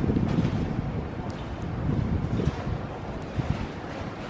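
Wind buffeting the camera microphone as a low, uneven rumble, over outdoor ambience.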